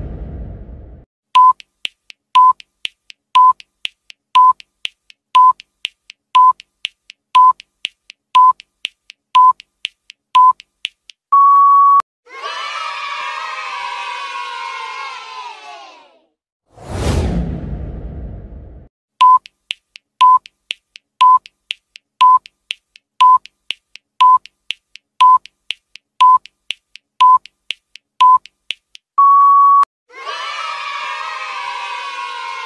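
Quiz countdown timer sound effect: ten electronic beeps one second apart with faster ticking between them, ending in one longer beep. A short burst of recorded children cheering and shouting follows, then a low whoosh, and the same ten-beep countdown runs again, ending in a long beep.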